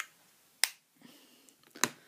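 Three sharp clicks, the second and third about a second apart, from makeup cases or compacts being snapped shut and handled.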